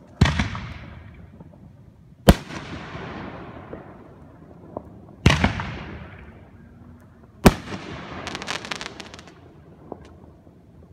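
Aerial firework shells bursting: four sharp bangs, two to three seconds apart, each trailing off in a rolling echo. Near the end comes a spell of rapid crackling.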